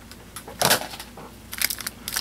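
Clear plastic protective film on a pair of headphones crinkling as they are handled: one short rustle a little before the middle and a few quick crackles near the end.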